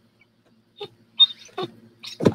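A nearly empty plastic squeeze bottle of acrylic paint being squeezed, giving a few short sputters and a brief squeak as air comes out with the last of the paint, in the second half after a near-silent start.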